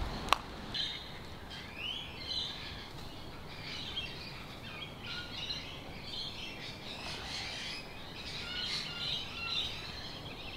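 Outdoor birdsong: a scattered run of short chirps and quick rising calls that keeps going. A single sharp click comes just after the start.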